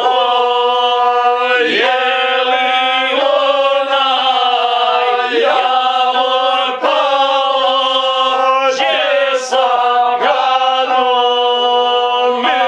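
Men singing together in a slow, chant-like Serbian folk song to the gusle, a single-string bowed folk fiddle, which holds a steady nasal tone under the voices. Long sung notes slide between pitches, with short breaks between phrases.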